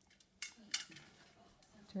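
A blue-and-gold macaw's claws clicking on a stainless steel perch top as it turns around, with two sharp metallic clicks in the first second and fainter scuffs after.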